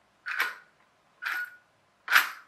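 Small brushed DC steering motor of a toy-grade car whirring twice, briefly each time, about a second apart, as it drives the steering hard over to its stop. Even a slight nudge of the stick sends it all the way, so the steering is not proportional.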